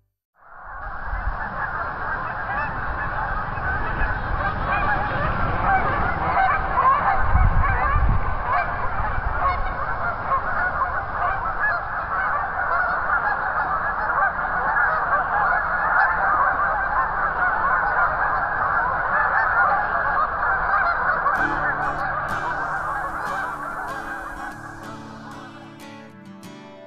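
A large flock of Canada geese honking, many overlapping calls in a dense, continuous chorus. The honking fades near the end as guitar music comes in.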